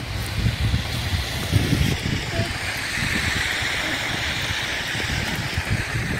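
Traffic on a wet, snowy road: a steady hiss of car tyres on slush that swells about halfway through, over irregular low rumbling on the microphone.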